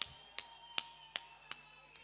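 Slow, even hand claps, about three a second, six in all, over a faint steady hum.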